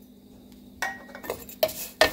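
A metal slotted spoon scraping and clinking against the pan as it stirs toasted fideo noodles with seasonings, a handful of strokes starting a little under a second in.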